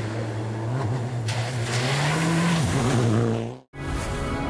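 Rally car engine running hard on a gravel stage, with tyre and gravel noise. The engine pitch climbs, then drops as the driver lifts. The sound cuts off abruptly near the end.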